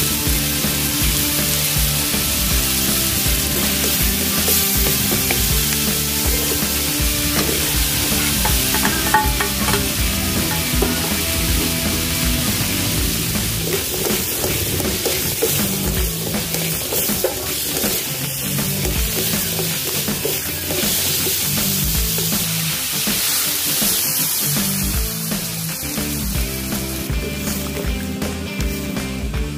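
Chicken and cubed squash sizzling as they fry in a metal wok, stirred and scraped with a ladle. Background music with a steady beat plays throughout.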